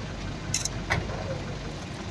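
Steady low outdoor background rumble, with a couple of faint short clicks about half a second and a second in.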